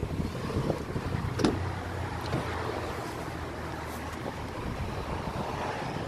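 A steady low motor hum under a light background hiss, with a single short click about a second and a half in.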